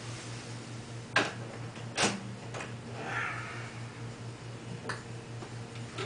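A nylon-string classical guitar knocks twice, sharply, against its wall hook and the wall as it is hung up, the two knocks about a second apart. Softer shuffling and a small click follow, over a steady low hum.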